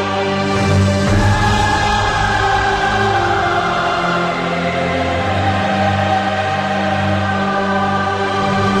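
Dramatic soundtrack music: a choir singing long held chords over a steady low drone.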